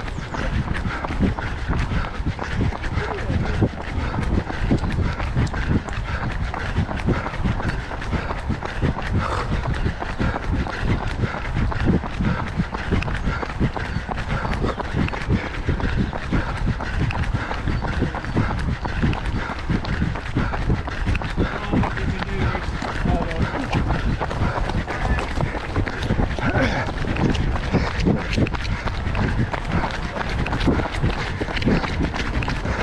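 A runner's steady footfalls on a wet tarmac path at running pace, a continuous run of low thuds picked up by a camera carried by the runner.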